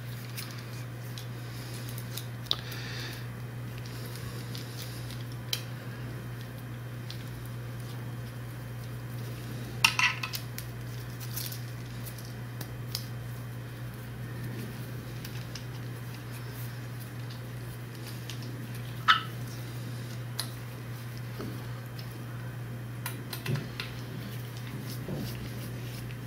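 A few sharp clicks and clinks of small aluminum steam-port adapters and Allen-head bolts being handled and fitted to an LS V8's cylinder heads, spread out over a steady low hum.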